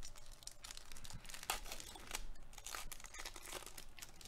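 Foil-lined wrapper of a Topps baseball card pack being torn open and crinkled by hand: a run of faint, irregular crackles and short rips, strongest around the middle.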